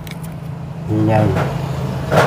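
A man speaking briefly about a second in, over a steady low background hum.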